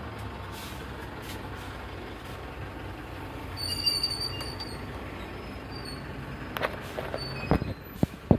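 Steady hum of road traffic passing on a nearby highway, with a brief high-pitched squeal about halfway through, like vehicle brakes. A few sharp knocks near the end from the phone being handled.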